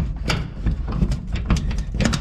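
A frozen metal door latch on a steel-clad barn door being worked by hand: an irregular run of knocks and rattles over a low rumble.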